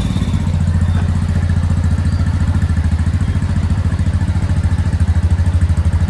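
Motorcycle engine idling steadily with an even rapid beat, left running to warm up in sub-zero cold before riding off. It gets a little louder near the end.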